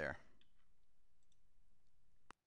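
A few faint clicks of a computer mouse over low room tone, as the page is scrolled and the pointer moves.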